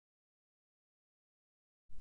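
Silence: a pause with no sound at all, then a voice starts saying a word at the very end.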